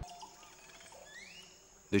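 Faint tropical riverside ambience: a steady high insect drone, with a few short rising whistled calls about a second in.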